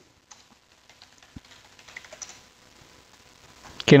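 Typing on a computer keyboard: a run of light, quiet key clicks.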